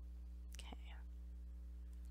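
A woman's quiet, breathy 'okay' about half a second in, over a steady low electrical hum.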